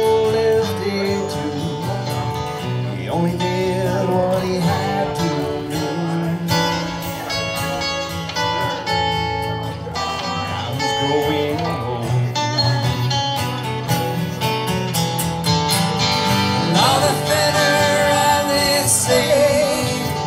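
Two acoustic guitars strummed and picked under a man's singing voice, a live country song with the vocal over the guitars.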